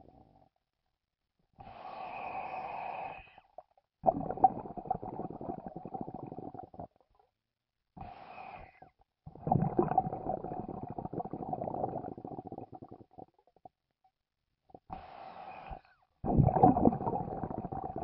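A rumbling noise with a steady mid-pitched tone running through it, coming three times in pairs: a short, higher-pitched burst, then a longer, louder rumbling stretch of a few seconds, with dead silence between.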